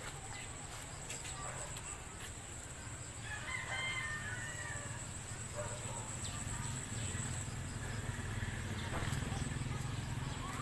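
A rooster crowing once, about three and a half seconds in, over a steady high thin whine and a low background rumble that grows louder toward the end.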